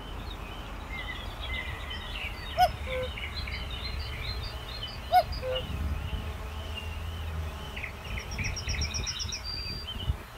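Several songbirds singing and chirping together. A louder two-note call, a short higher note and then a lower one, sounds twice about two and a half seconds apart, and a fast trill comes near the end, all over a low rumble.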